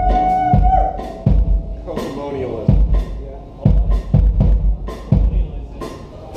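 Drum kit played in a slow, loose beat, a bass-drum hit with a sharp strike about every three-quarters of a second. A held electric guitar note rings and fades in the first second.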